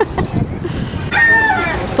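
A rooster crowing once, for just under a second, starting about halfway through; the call holds steady and then drops at the end.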